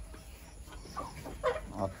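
Chickens clucking: a few short calls in quick succession, starting about halfway in.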